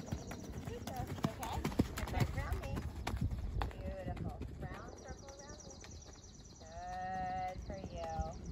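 A horse's hoofbeats on the sand footing of a riding arena, over a low outdoor rumble. A woman calls out now and then, with one long drawn-out call near the end.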